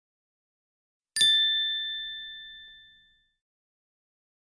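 A single bright ding, a bell-like chime sound effect struck about a second in and ringing out as it fades over about two seconds, with dead silence around it.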